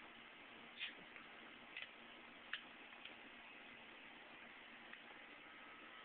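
Near silence: a steady faint hiss broken by about four brief, soft clicks in the first three seconds.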